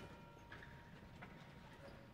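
Near-silent concert hall with a few faint, scattered footsteps of singers walking on the stage floor. A lingering pitched note fades out in the first half-second.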